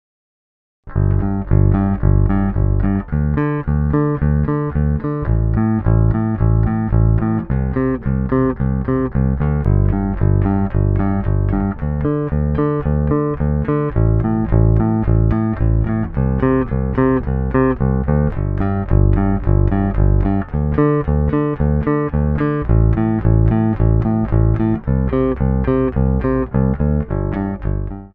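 Squier electric bass picked with NPV aluminium picks, shiny-surfaced and then textured, recorded straight into an audio interface with no effects. It plays a repeated riff of sharply attacked picked notes that starts about a second in and keeps going without a break.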